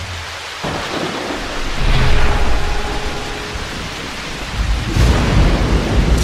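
Thunderstorm sound effect: steady heavy rain with rolling thunder, the thunder swelling about two seconds in and again near the end.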